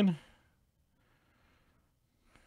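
A man's voice trailing off at the end of a drawn-out word, then near silence with a faint breath.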